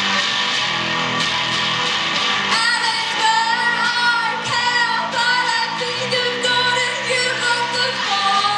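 A woman singing over a strummed electric guitar played through a small amplifier. Her voice comes in about two and a half seconds in and holds long, wavering notes.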